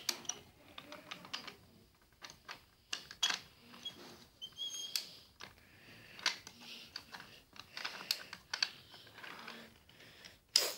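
Irregular light clicks and taps of toy trains and wooden track being handled and pushed along by hand.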